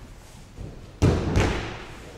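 A body landing on judo mats in a breakfall from an aikido shiho nage throw. There is a light thud about half a second in, then two heavy thuds about a third of a second apart, just after the middle.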